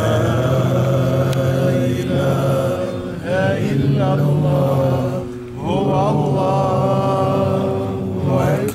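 A man chanting Quran recitation in long, drawn-out melodic phrases with ornamented turns on the held notes, pausing for breath twice.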